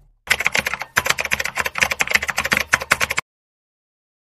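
Typing sound effect: a rapid run of keyboard clicks that cuts off abruptly about three seconds in.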